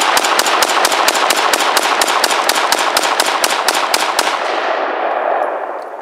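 Ruger Mini-14 semi-automatic rifle fired as fast as the trigger can be pulled, emptying a 20-round magazine: a rapid, even string of shots at about four or five a second that stops about four seconds in. The echo of the shots fades away over the following two seconds.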